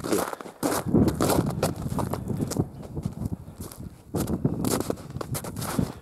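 Hurried footsteps through trodden snow and loose hay, a quick run of irregular crunching steps.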